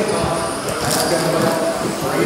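A race caller's voice over a PA, echoing in a large hall, with 1/10-scale electric RC buggies running on the track beneath it and a sharp click about a second in.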